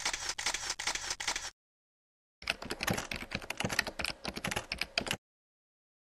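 Rapid camera shutter clicks in two bursts: the first stops about one and a half seconds in, the second runs from about two and a half to five seconds in, with dead silence between.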